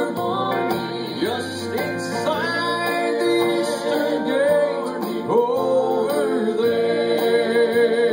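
A gospel vocal group singing in harmony over instrumental accompaniment, several voices holding long notes with vibrato.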